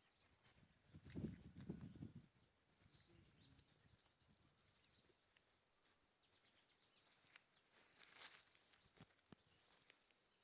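Near silence: faint outdoor ambience, with a brief faint low sound about a second in and a short crackle near eight seconds.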